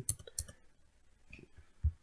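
A few faint computer mouse clicks in a pause between speech, the last and loudest just before the voice resumes.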